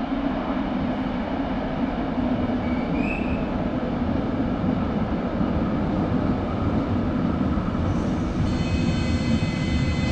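Electric passenger train in a station: a steady low rumble, joined about eight and a half seconds in by a high whine of several steady tones as the train comes in along the platform. A brief high squeak sounds about three seconds in.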